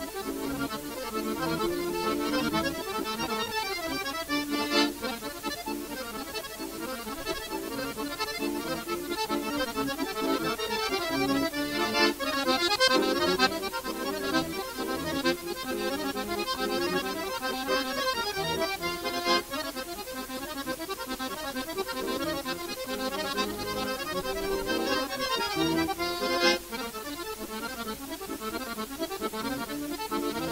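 Two chromatic button accordions playing a tune together as a duet, with a few short, sharp accents.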